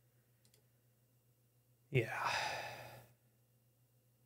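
A man's voice lets out one long, breathy, sighed "yeah" about two seconds in, loud at first and trailing off over about a second. A faint steady low hum sits underneath.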